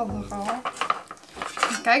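Light clinks and knocks of a metal crown-shaped holder as a yarn-wrapped pot is handled and set down into it on a tabletop.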